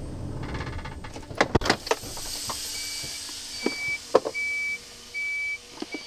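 HGV cab as the truck is brought to a stop: the engine runs low underneath, a couple of sharp clicks, then a burst of hissing about two seconds in. Shortly after, a short high electronic warning beep starts repeating steadily, about once every 0.8 seconds.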